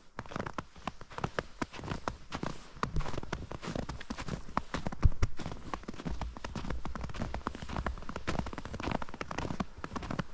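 Hikers' footsteps crunching through fresh, untracked powder snow at a steady walking pace, each step a cluster of small crackles. A low rumble runs under the middle part, and there is one sharper knock about halfway through.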